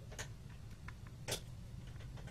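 Small precision screwdriver working a screw in the metal cover of a 2.5-inch laptop hard drive, giving a few light, sharp metallic clicks, two of them louder: one just after the start and one a little past the middle. A low steady hum runs underneath.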